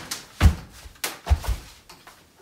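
A few dull knocks and thumps, about four in under two seconds, from something being handled and knocked against hard surfaces.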